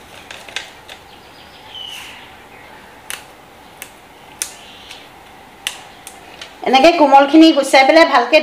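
Tender dhekia fern shoots being snapped apart by hand over a steel plate: a handful of sharp, separate clicks spread over several seconds in a quiet room. A woman starts talking near the end.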